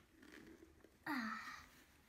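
A second of quiet room tone, then a person's drawn-out, sighing "uh" that falls in pitch and fades.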